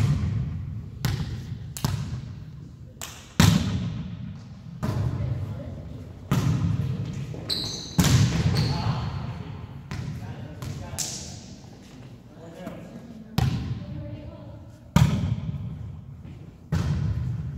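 A volleyball being hit back and forth in a rally, with sharp smacks a second or two apart, each echoing around a gymnasium, along with players' voices.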